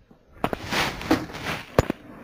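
Plastic lid being fitted onto a plastic fermenting bucket: scraping and rubbing, with several sharp clicks as the rim is pressed down, the loudest near the end.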